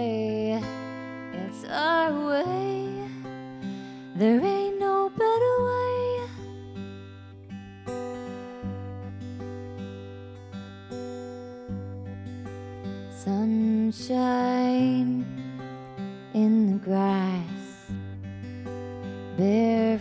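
Live music: a woman singing a slow song over her own strummed steel-string acoustic guitar. The sung phrases come and go, and the guitar chords ring on between them.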